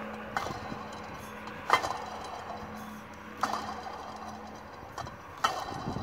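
Pulley of the original Mercedes GL500 water pump spun by hand, flicked three times about 1.7 s apart, each time giving a light whir from its bearing that fades as it coasts down. The bearing is slightly noisy after about 246,000 km, though the pump still turns and does not leak.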